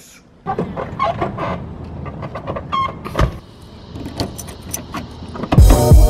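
A motor vehicle running, with a few scattered clicks and knocks over it; background music with a beat comes in near the end.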